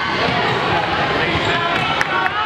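A basketball bouncing on a hardwood gym floor amid players' and spectators' voices in the hall.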